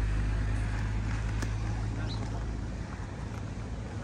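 A low, steady engine hum that fades away about three seconds in, over a general outdoor background.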